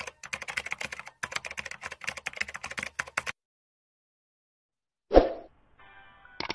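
Keyboard typing sound effect: a fast run of key clicks for about three seconds, then silence. Near the end comes a single loud thump, the loudest sound here.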